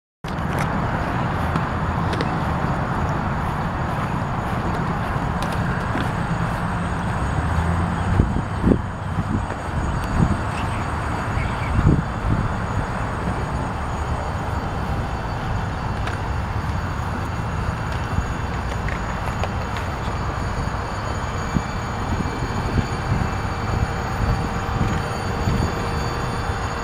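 GE ES44DC diesel-electric locomotive's twelve-cylinder GEVO engine running steadily while the locomotive stands, with a faint high ringing tone over the rumble.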